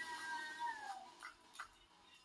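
A long, high, wail-like note in the film's soundtrack, held steady and then sliding down in pitch and fading out about a second in, leaving near quiet with a couple of faint ticks.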